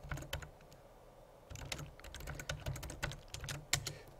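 Typing on a computer keyboard: a run of keystroke clicks, with a pause of about a second near the start before the typing picks up again.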